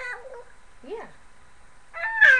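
A baby vocalizing: a short high squeal at the start, then a brief rising-and-falling coo about a second in.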